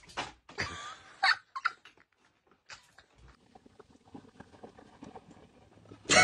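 A cat landing on a cluttered shelf cart: a quick series of knocks and rattles of small objects in the first two seconds, the loudest about a second in, then a few faint ticks.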